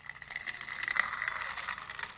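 Sound effect of metal scraping against a stone wall: a gritty, rattling scrape of about two seconds with a faint steady high ring through it, loudest around the middle.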